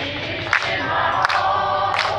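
A group of people singing together, with held sung notes over crowd noise.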